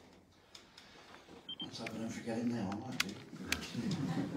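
A man's voice talking over a microphone in a small room, starting after a quiet pause of about a second and a half. Two short sharp clicks come near the end.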